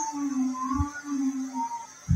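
A person's voice humming one long, low "mmm" that wavers slightly in pitch, with a soft low thump about halfway through.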